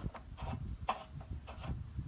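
Metal tow hook being screwed by hand into the bumper's threaded tow-hook socket, making light, irregular clicks and scrapes as it turns.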